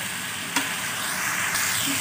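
Green beans and potato slices frying in oil in a metal korai, a steady sizzle, with a metal spatula stirring and one light click against the pan about a quarter of the way in.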